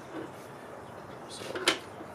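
A single sharp click about a second and a half in, as a plastic marker is handled and put away, over quiet room tone.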